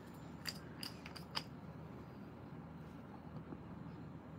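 About five light, sharp clicks in quick succession in the first second and a half, as a makeup sponge and small nail tools are handled while nail polish is brushed onto the sponge; then only faint room tone.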